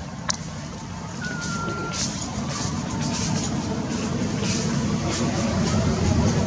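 Low motor-vehicle engine rumble that grows steadily louder, with a sharp click just after the start and a short steady beep between about one and two seconds in.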